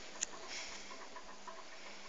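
Faint handling noise from a cap being turned in the hands: light rustling with one sharp click just after the start.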